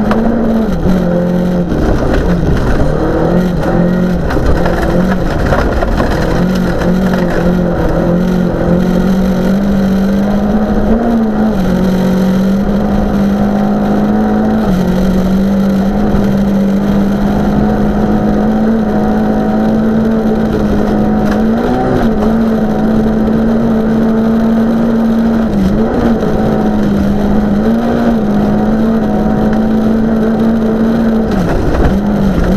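Volvo 940 rally car's engine heard from inside the cabin, pulling hard at high, nearly steady revs. The pitch dips briefly a few times as the driver shifts up or lifts, over a constant rumble of tyres on gravel.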